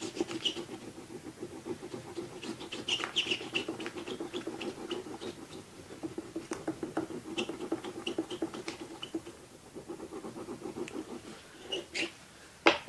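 Oil pastel scratching and rubbing across the painting surface in many quick, short strokes, with small sharp clicks among them.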